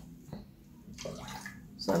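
Blended ginger juice trickling and dripping through a mesh strainer into a plastic jug as a spoon presses the wet pulp, quiet, with a few faint scrapes.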